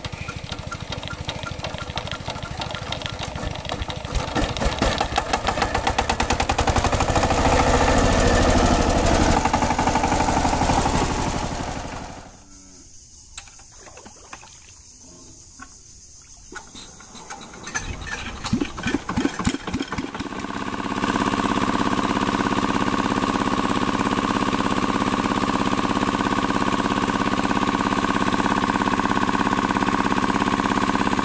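Single-cylinder horizontal diesel engine of a two-wheel tractor running, growing louder over several seconds. After a break, a single-cylinder diesel water-pump engine is hand-cranked: a quick run of knocks as it fires and catches about two-thirds of the way in, then it settles into a steady run, pumping water.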